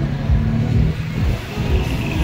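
A passenger van's engine running as it rolls slowly past close by, mixed with music with a deep bass.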